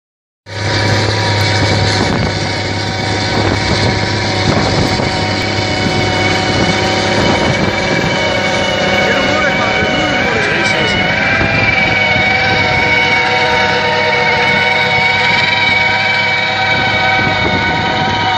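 Tracked tractor's diesel engine running steadily under load while it pulls a Farmtec Agri 400 rotary plough churning through very tough rice-paddy soil. Over it is a steady whine of several high tones.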